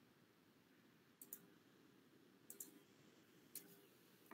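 Faint clicks of a computer mouse in three short groups about a second apart, over quiet room noise.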